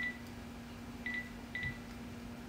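Mobile phone keypad beeps as a number is dialed: three short beeps of the same pitch, one at the start and two more about a second later, half a second apart.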